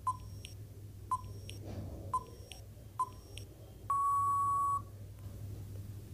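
Countdown timer sound effect: a short electronic beep once a second, four times, with a fainter tick between beeps, then one longer beep of about a second marking time up.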